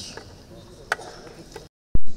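Pause in speech picked up on a desk microphone: faint room noise with a sharp click about a second in, then a brief dropout to dead silence ended by a short, loud pop near the end, the mark of a cut in the recording.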